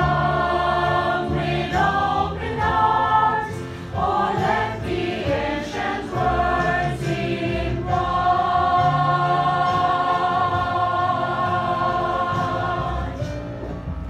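A small choir of women and a man singing a gospel worship song together, the notes changing every second or so; about eight seconds in they hold one long chord for some five seconds before it breaks off.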